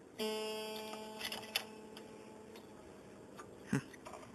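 A steel string of an acoustic guitar plucked once, ringing and fading away over about two and a half seconds, followed by a few light clicks and a short knock near the end.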